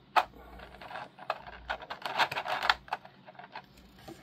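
Small hard plastic action-figure parts clicking and clattering as they are handled: one sharp click just after the start, then a quick run of small clicks through the middle.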